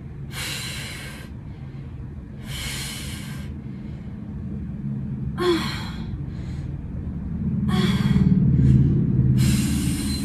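A woman breathing hard from exertion: five forceful breaths of about a second each, spaced roughly two seconds apart. A low steady rumble runs underneath and grows louder near the end.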